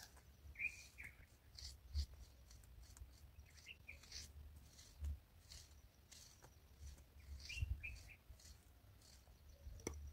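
Soft scratching of a wooden stick being drawn through loose soil to make furrows, with a few faint bird chirps and a couple of dull low thumps.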